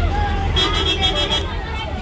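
Children chattering inside a moving bus, over the steady low rumble of the bus engine and road noise.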